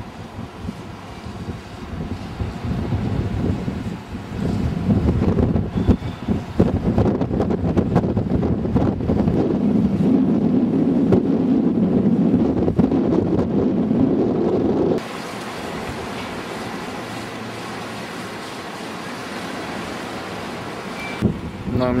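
Wind buffeting the camcorder microphone high on a tower lookout gallery: a gusty rumble that builds up over the first half, then cuts abruptly about fifteen seconds in to a quieter, steadier wind noise.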